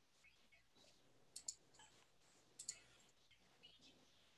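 Near silence with a few faint, sharp clicks coming over a video-call microphone, in two quick pairs about a second and a half and two and a half seconds in, with a weaker one near the end.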